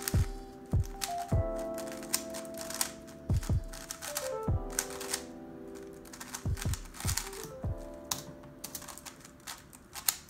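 Background music with held chords and drum hits, over the fast, irregular clicking of a DaYan TengYun V2 M magnetic 3x3 speedcube being turned during a speedsolve.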